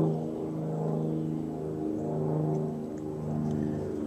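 A steady low mechanical drone held at one constant pitch, typical of an engine running at idle.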